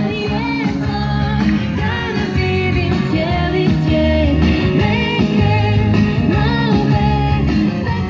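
An Iskra Triglav 62A valve radio playing a rock song with guitar and a singer in Croatian through its loudspeaker.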